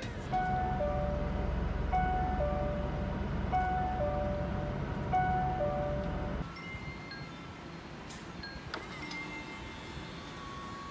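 Mitsubishi Triton pickup's in-cabin warning chime, a two-note falling ding-dong repeating about every second and a half, over a low engine rumble. Both stop about six and a half seconds in, leaving only a few faint higher beeps.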